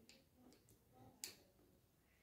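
Faint, irregular clicks of a wooden spoon tapping against a small ceramic bowl while stirring a honey and aspirin paste, the clearest a little after a second in.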